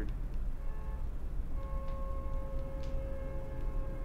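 Background hum with faint steady whining tones that come in after about half a second, plus a few faint ticks; no speech.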